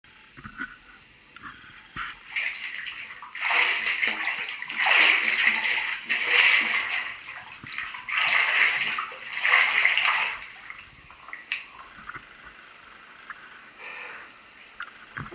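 Water sloshing and splashing in a filled bathtub, churned by feet in sneakers and jeans, in about five surges a second or so apart. It then settles to small drips and splashes.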